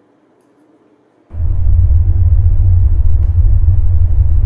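A deep, loud bass rumble, a sound effect edited in: near silence at first, then the rumble cuts in suddenly about a second in and holds steady.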